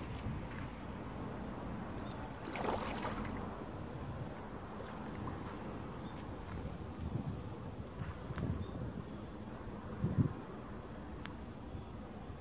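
Wind rumbling on the microphone over water sloshing as a hooked carp swirls and thrashes at the surface while being played to tire it. There is a louder splash about three seconds in and smaller ones near the end.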